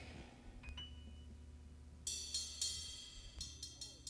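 Quiet stage with a faint low hum. About two seconds in, a few soft strikes of metallic percussion ring out with a bright shimmer and fade away, just before the salsa band comes in.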